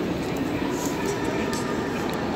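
Steady ambience of a large railway station hall: a low rail-traffic rumble with distant voices and a few light clicks, echoing in the big space.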